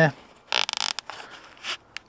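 A plastic cable tie being pulled tight through its ratchet: a quick zipping rattle about half a second in, then a shorter pull near the end.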